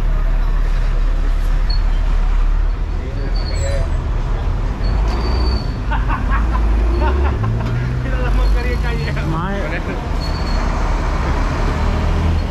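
Large bus engine running close by amid street traffic, with a low rumble throughout; its engine note rises about seven seconds in as it pulls away.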